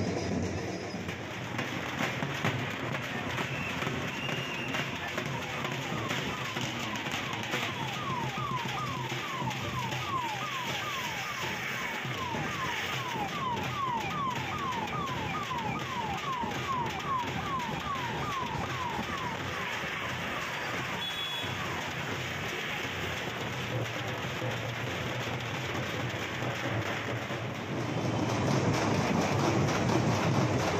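Street-crowd din with a repeated electronic siren-like falling whoop, about three a second, sounding for some twelve seconds in the middle. The noise grows louder near the end.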